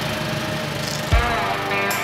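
A small engine running steadily with an even low pulse, the generator or pump engine driving water along the pipe. About a second in, a low thump and background music come in over it.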